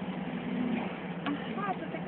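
Steady running hum of a moving road vehicle heard from inside the cabin, with a person's voice starting to speak about a second in.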